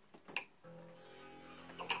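Martin X Series dreadnought acoustic guitar's strings ringing faintly as a steady held tone from a little over half a second in. A small click comes just before it and another near the end, from the string winder being fitted and worked on a tuning peg.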